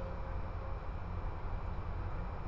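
Steady outdoor background noise: a low rumble with an even hiss, and no distinct event or motor whine standing out.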